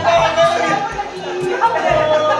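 Several people talking and calling out over each other, over music with a bass line and a steady beat.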